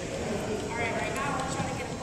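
Background chatter of several people in a reverberant gymnasium, with a few short, sharp knocks from softballs being thrown and caught in a game of catch.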